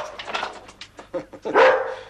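A large spitz-type dog barking: a loud bark right at the start and another about one and a half seconds in, with smaller sounds between them.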